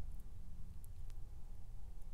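Quiet room tone with a steady low hum and a few faint, light clicks from round-nose jewelry pliers and the beaded wire they hold.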